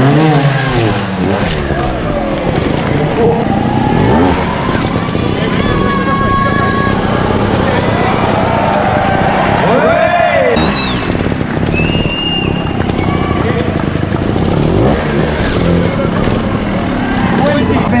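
Sherco trials motorcycle engine blipped in short revs that rise and fall in pitch as the bike is hopped and balanced across rocks, with a voice over the arena loudspeakers running alongside.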